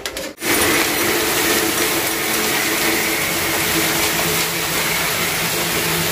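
Uncooked rice pouring in a steady stream into a plastic bucket: a continuous, even hiss of grains, starting about half a second in.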